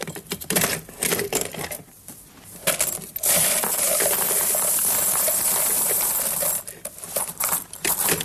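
Silver coins poured out of a metal-clad casket into a wooden tray: a few separate clinks, then a dense cascade of coins for about three seconds, then scattered clinks as they settle.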